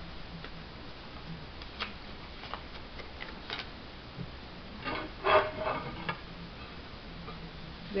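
A few light clicks and taps from hands handling a ceramic tile and small self-adhesive rubber bumpers, with a short burst of a woman's voice about five seconds in.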